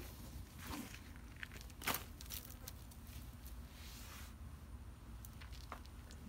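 Faint rustling and scattered light clicks of potting mix being spread by hand in a plastic-lined wicker hanging basket, with a sharper click about two seconds in.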